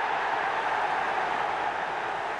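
Football stadium crowd cheering a home goal: a steady, loud roar of many voices.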